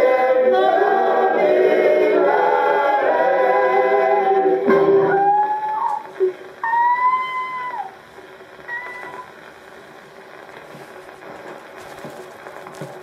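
Acoustic Orthophonic Victrola Credenza gramophone playing the close of a 78 rpm comic song: singing with accompaniment, then a few held, gliding closing notes. The music ends about eight seconds in, leaving the record's steady surface hiss.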